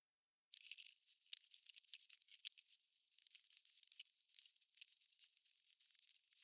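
Faint rustling and crackling of a paperback's paper pages being handled and turned, a dense run of small crisp ticks starting about half a second in.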